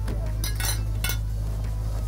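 A few light metallic clinks and rustles about half a second and a second in, as a nurse handles a gauze dressing and a small metal instrument on a patient's arm, over a steady low hum.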